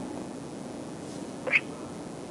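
Faint steady hiss of an open call-in phone line during a pause, with one short blip about one and a half seconds in.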